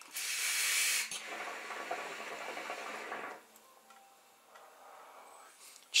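A long draw on a hookah: air rushing through the hose and smoke passing through the water in the base. It is loudest in the first second, carries on more softly, and stops about three and a half seconds in. The draw is taken to judge the smoke and strength of the tobacco.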